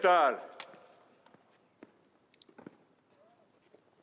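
The drawn-out end of a shouted parade command, its echo ringing off for about a second. After it come only a few faint, scattered taps.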